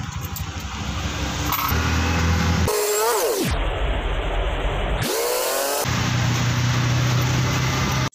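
Small motorcycle engine of a passenger tricycle running under way, its pitch falling sharply about three seconds in as it slows and climbing again about two seconds later as it speeds up.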